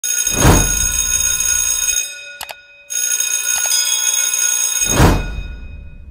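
Intro sound effects: an electric bell rings in two stretches with a short break about halfway. A whoosh sweeps through near the start and another near the end.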